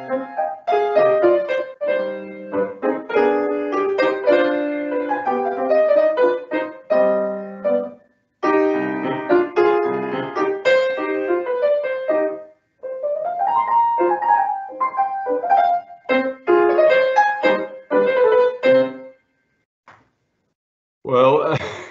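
A grand piano played solo: the opening of a piece, a run of melody and chords. The sound drops out briefly twice, about eight seconds in and again some four seconds later, and the playing stops about a second before the end.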